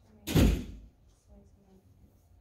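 A single loud thump about a third of a second in, dying away within half a second.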